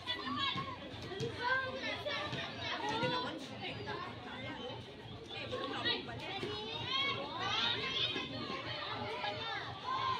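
Many girls' voices shouting and calling out over one another as players in a captain ball game, a continuous overlapping babble of high calls with no clear words.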